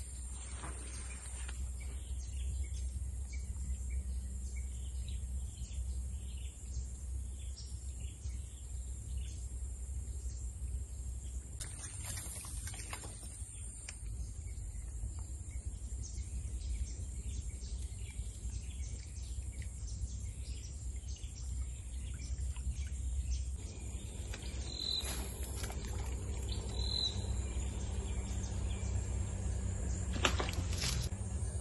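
Swamp-forest ambience: insects buzzing at a steady high pitch with many short bird chirps, and two clearer high calls near the end, over a steady low rumble.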